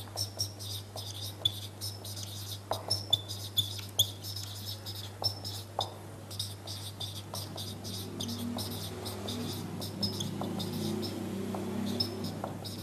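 Marker pen squeaking on a whiteboard in many short strokes as words are written, over a steady low hum.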